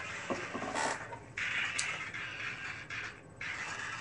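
Nylon tactical vest and pouches rustling and scraping as they are handled, in two scratchy stretches about a second and a half in and again near the end, with a few light clicks.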